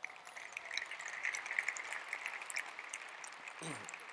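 Audience applause, fairly soft, starting at once and fading near the end.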